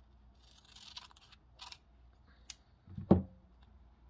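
Scissors cutting through a folded paper coffee filter, with the crunchy snip about a second in, followed by a few light clicks and a louder thump about three seconds in.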